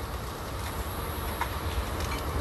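Steady cabin noise inside a private jet: a low rumble with an even hiss.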